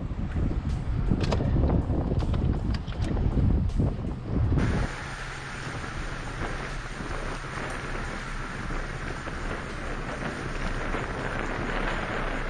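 Wind buffeting the microphone outdoors: a heavy, gusting low rumble with scattered clicks. About four and a half seconds in, it switches abruptly to a steadier, quieter wind hiss.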